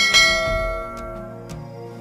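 A bright bell-like chime sound effect struck once and ringing out as it fades over about a second, over soft background music.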